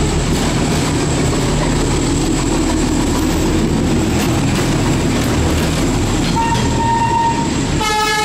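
A D12E diesel locomotive and its passenger coaches passing a few metres away on street-running track, a loud, steady rumble and rattle of engine and wheels. A steady horn tone sounds for about a second, about six and a half seconds in.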